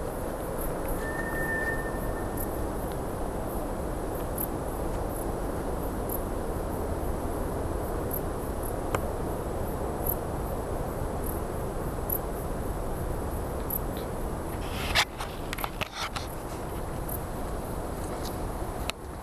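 Night insects chirping faintly in short high ticks over a steady rushing noise, with a few sharp cracks and rustles about fifteen seconds in.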